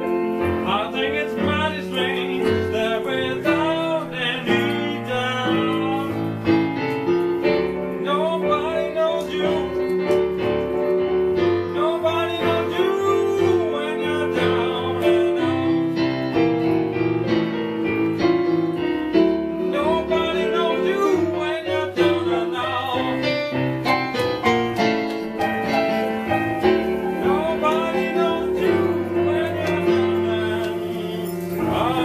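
Blues piano played on a digital piano, with a man singing along.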